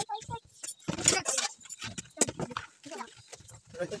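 A machete chopping through a whole plucked chicken on a wooden block, giving a series of irregular knocks, with voices in the background.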